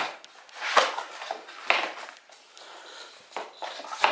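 Virginia Mill Works acacia click-lock floorboard being slid and dropped into its drop-in end-lock joint: wood rubbing against wood, with a few light knocks as the board seats.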